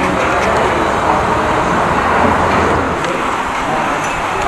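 Road traffic passing an open-air roadside eatery: a heavy vehicle's low rumble under a dense wash of road noise, easing off about three seconds in.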